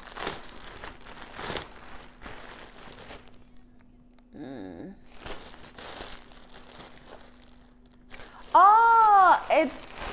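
Plastic packaging crinkling and rustling as a parcel is handled and opened, in two bouts. Near the end a loud, drawn-out voiced exclamation rises and falls in pitch.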